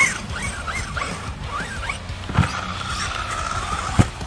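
Losi DBXL-E 2.0 RC buggy's brushless electric drivetrain whining up and down with short throttle blips as it drives over grass. A thump comes about two and a half seconds in, then the whine holds steady near the end.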